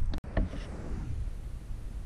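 Camera handling noise: a low rumble with a few soft knocks, broken by a momentary dropout near the start.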